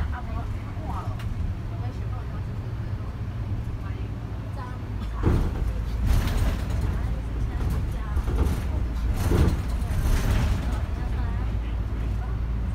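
Inside a moving bus: a steady engine hum and road noise. From about five seconds in come louder knocks and rattles.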